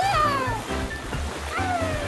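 Cartoon background music with two gliding, meow-like cries, one at the start and one about a second and a half in, each rising briefly and then sliding down in pitch as the characters slide across wet ground.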